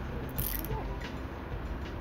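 Handcuffs ratcheting shut: a run of fast metallic clicks.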